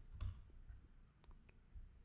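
A few faint, scattered computer keyboard clicks, single keystrokes roughly half a second apart, the loudest just after the start.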